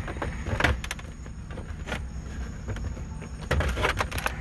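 Plastic panel removal tool prying at a car's plastic dash trim panel: a few sharp clicks and knocks of plastic on plastic, the sharpest about half a second in and a cluster near the end, over a steady low hum.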